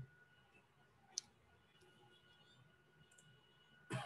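Near silence: quiet room tone with a faint steady high whine, broken by a single sharp click about a second in.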